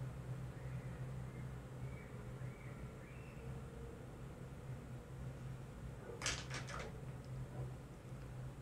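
Quiet room tone with a low steady hum. About six seconds in comes a quick run of three or four sharp clicks from makeup tools being handled, as one brush is put down and another picked up.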